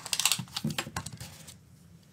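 Quick run of small clicks and rustles from a tape measure being handled and laid along crocheted fabric, thinning out after about a second and a half.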